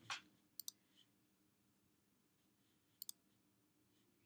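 Computer mouse clicked twice, about two and a half seconds apart, each click a quick pair of ticks; near silence in between.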